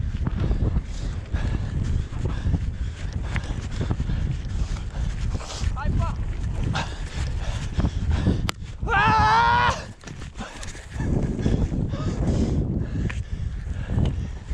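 Low, bumpy rumble of a mountain bike rolling over rough grassy ground, with wind on the microphone; a person's shout rises about nine seconds in.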